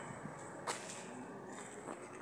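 Faint outdoor background noise, with one sharp click a little under a second in and a fainter click near the end.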